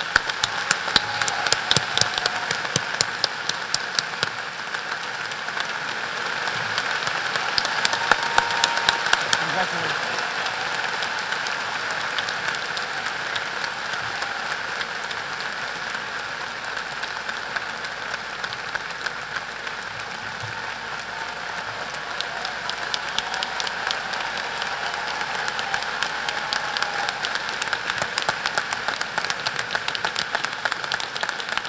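A large audience applauding steadily for a long stretch, starting at once and swelling slightly a few seconds in.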